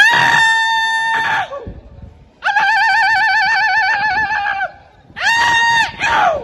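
A man's traditional war cry shouted into a microphone: three long, high held calls, the first rising in and falling away, the middle one the longest and wavering, the last shorter near the end.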